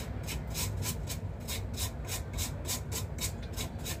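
Kitchen knife blade scraping the skin off a lotus root in quick, even strokes, about four a second.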